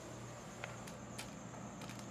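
Faint night-time background: a steady high-pitched insect trill over a low hum, with a few soft clicks about a second in.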